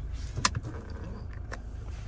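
Toyota Hilux 2.8 D-4D four-cylinder turbodiesel idling, heard from inside the cab as a steady low hum. A sharp click comes about half a second in, and a fainter one about a second later.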